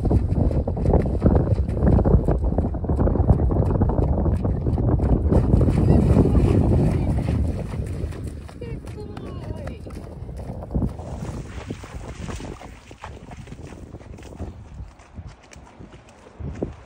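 Wind buffeting the microphone over a horse's hooves splashing through shallow water at a canter. The wind noise eases after about seven seconds, leaving fainter, scattered splashes.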